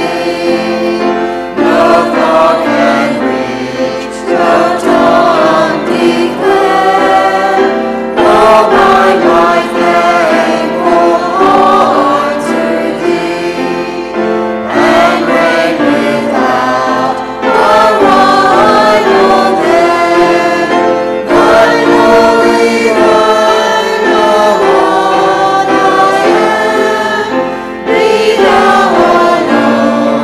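A mixed choir of men's and women's voices singing a hymn, in phrases with brief breaks between lines.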